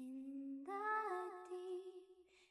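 A voice humming a slow tune in long held notes, stepping up to a higher note about two-thirds of a second in and fading near the end.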